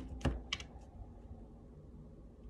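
Tarot deck being shuffled by hand: the last two soft card slaps about half a second apart in the first moment, dying away.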